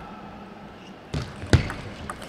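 Table tennis ball served and returned: after about a second of hall quiet, a few sharp clicks of the ball on bats and table, the loudest about halfway through.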